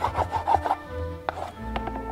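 A hand rubbing quickly back and forth over paper on a book board, about four scratchy strokes a second, pressing down a newly laid end paper. The rubbing stops about a second in, and soft background music plays throughout.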